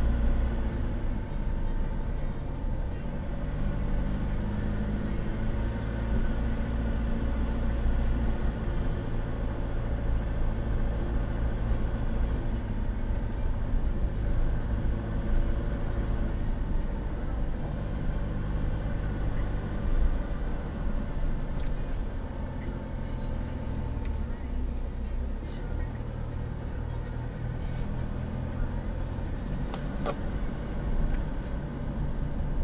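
Car engine and tyre noise heard from inside the cabin while driving slowly: a steady low hum whose pitch shifts a little with speed, a little quieter in the last third.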